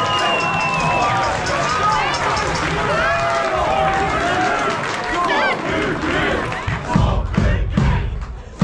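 Concert audience cheering and shouting, many voices at once. From about seven seconds in, heavy thumps begin, roughly two a second.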